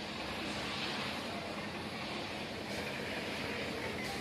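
A steady engine drone with an even background hiss, unchanging in level.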